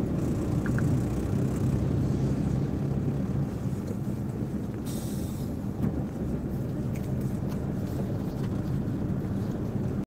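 Steady low engine and road rumble of a moving vehicle, heard from on board, with a short hiss about five seconds in.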